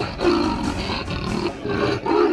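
Leopard giving about three rough, roaring calls in quick succession.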